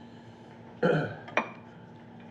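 A short throaty vocal noise close to the microphone about a second in, followed by a sharp click, against quiet room tone.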